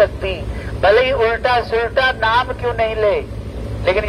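Speech in a continuous flow, over a steady low hum.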